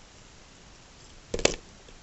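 Handling noise: a short cluster of clicks and knocks about a second and a half in, against quiet room tone.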